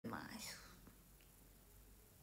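A woman's brief, soft whispered voice sound in the first half-second, its pitch rising then falling, then near silence with faint room hum.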